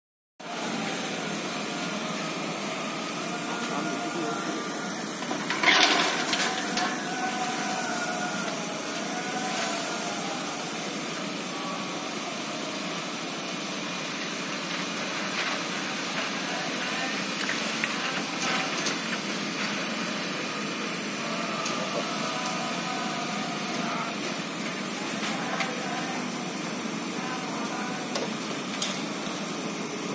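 Large building fire burning: a steady rushing noise with scattered sharp cracks and pops, the loudest about six seconds in, and faint voices in the background.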